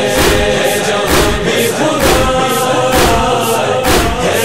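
Backing chorus of voices holding a sustained chant in a noha recording, over a steady beat of strikes at about two a second.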